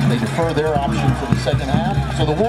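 Several people talking at once, indistinct, with no clear words.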